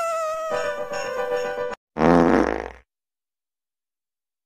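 A loud fart just under a second long, about two seconds in, most likely the French bulldog's. Before it, a long whine-like tone slides slowly down in pitch and breaks off.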